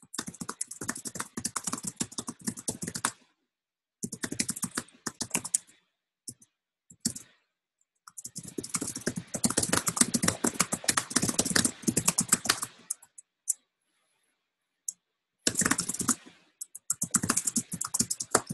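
Typing on a computer keyboard: bursts of rapid key clicks a few seconds long, broken by short pauses. The longest run comes in the middle.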